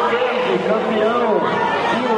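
Several men's voices shouting and talking over each other amid crowd chatter.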